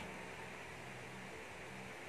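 Quiet, steady hiss with a faint low hum: room tone.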